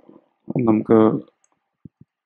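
Speech only: a single short spoken phrase about half a second in, and a faint tick near the end.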